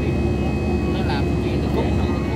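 Steady roar of a jet airliner's engines and rushing air heard from inside the passenger cabin after takeoff, with a constant low hum running under it.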